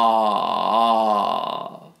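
A man's voice sustaining a repeated open 'ah' vowel without breaking, the pitch dipping and rising again between each 'ah' so that they join into waves, then trailing off near the end. This is an open-throat vowel drill: the voice is kept flowing rather than being cut off in the throat after each vowel.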